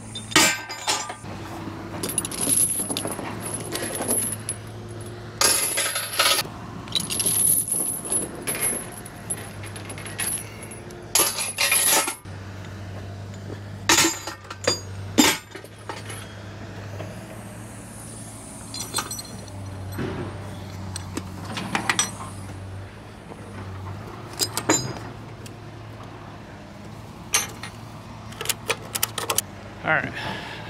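Steel chains and hooks clinking and clanking on a heavy-haul trailer deck, in a run of irregular sharp metallic hits and jingles. A truck engine idles steadily underneath.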